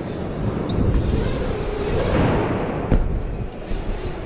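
Mountain bike tyres rolling fast over wooden skatepark ramps, a steady low rumble, with one sharp knock about three seconds in.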